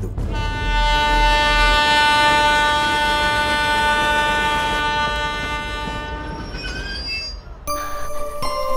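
Train locomotive horn sounding one long, steady blast of about five seconds over a deep rumble, then fading away.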